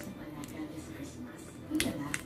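Spatula working thick brownie batter in a glass bowl, with a few sharp clicks of the utensil against the glass, the loudest near the end.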